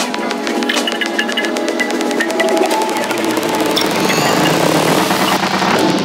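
Darkpsy psytrance track in a stripped-down passage without kick drum or bassline: fast ticking percussion and layered synth lines, with a rising sweep building about four seconds in.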